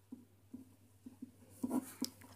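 Pen writing on paper: a run of short, faint strokes as a word is written by hand, a little louder near the end.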